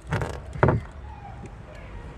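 Plastic parcel shelf of a hatchback boot being handled as its lifting strings are hooked onto the tailgate: a short rustle at the start, then a quick downward-sliding squeak about half a second in.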